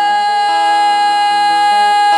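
A female singer holding one long, steady high note over acoustic guitar accompaniment, sung live into a microphone.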